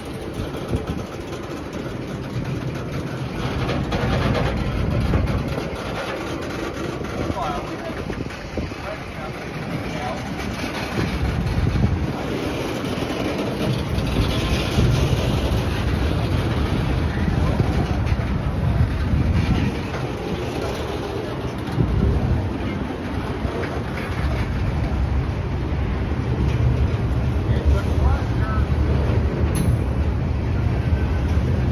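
Open-top Herzog freight cars rolling past at close range: a steady rumble of steel wheels on rail with occasional clanks, growing louder over the first half.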